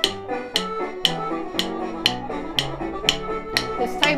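Wooden drumsticks tapping a steady beat, about two taps a second, in time with instrumental backing music.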